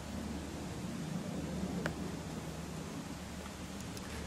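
Quiet room noise with a steady low hum and faint handling of a ring-bound paper brochure, with one light click about two seconds in.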